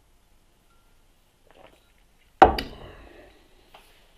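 A beer glass set down on a wooden table: one sharp knock with a quick second tap, and the glass ringing briefly as it fades.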